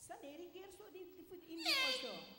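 A stage actor's voice through a headset microphone, held on a fairly level pitch, then breaking into a loud, high cry near the end that falls steeply in pitch.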